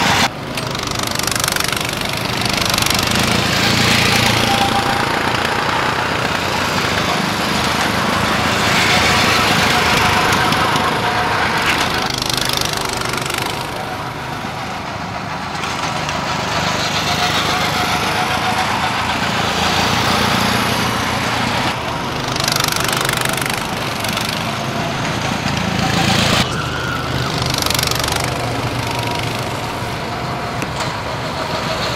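Small go-kart engines running, the sound swelling and fading several times as karts drive past.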